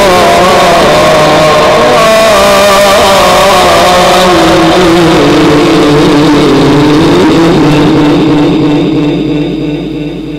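A man reciting the Quran in the drawn-out melodic style through a microphone, holding one long phrase whose pitch wavers and slides. The phrase fades out near the end.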